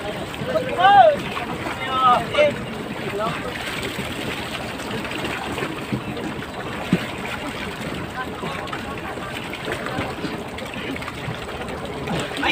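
A few short shouted calls from men in the first two seconds or so, then a steady wash of noise from the fishing boat and the sea.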